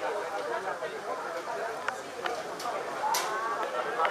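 Indistinct chatter of several people talking at once, with a few brief sharp clicks about two seconds in and a short high burst a little after three seconds.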